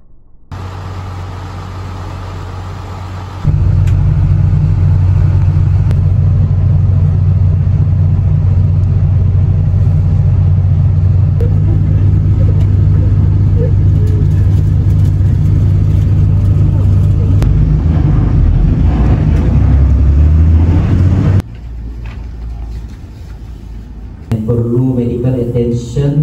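Steady low rumble of a road vehicle's engine and tyres heard from inside the cabin while driving. It grows louder a few seconds in and cuts off abruptly near the end.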